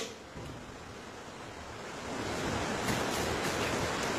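Steady hiss with no voice in it, growing louder about two seconds in: the background noise of a recorded phone call starting to play.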